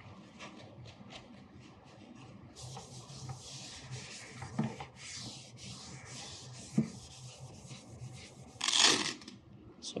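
A paper towel damp with rubbing alcohol is rubbed in strokes over the inside wall of a cabinet, wiping the surface clean. The rubbing starts a couple of seconds in, with one louder scrape near the end.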